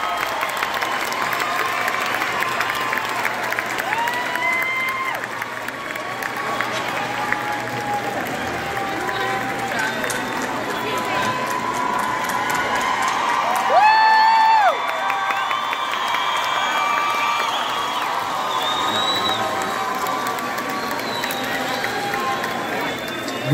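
Large arena concert crowd cheering, clapping and shouting between songs, with many voices calling out over the noise. One loud held shout rises above the rest about fourteen seconds in.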